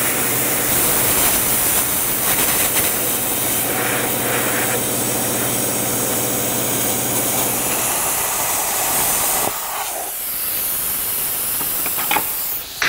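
Plasma cutter cutting through the rusted steel of a car's unibody: a loud, steady hiss with a low buzz under it. The hiss changes and drops a little near the end.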